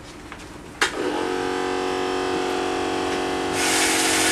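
Battery-operated tin toy robots switched on: a click about a second in, then a steady whirring of their small electric motors and gears. A hissier mechanical noise joins near the end.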